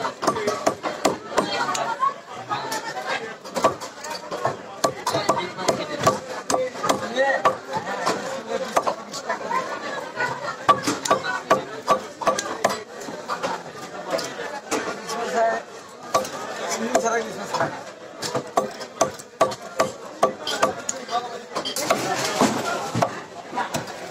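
Climbing perch being scaled by hand against a boti blade: quick, repeated scraping strokes, several a second, over steady chatter of voices.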